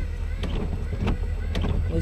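Car windshield wiper sweeping across a rain-wet windshield, a sharp knock about every half second at each end of its stroke, over a steady low engine rumble.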